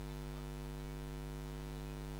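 Steady electrical mains hum, a low buzz with evenly spaced overtones, from the event's public-address sound system while its microphone is idle.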